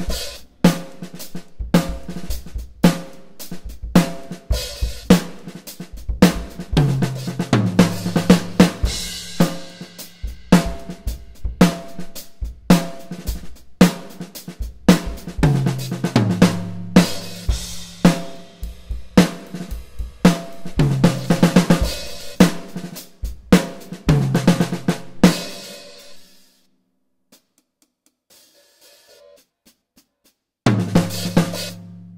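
Superior Drummer 3's sampled Ayotte Classic acoustic drum kit, played live from electronic mesh pads: a steady groove of kick, snare, hi-hat and cymbals, broken by three tom fills that step down in pitch. The playing stops about four seconds before the end, leaving a faint ring and then near silence.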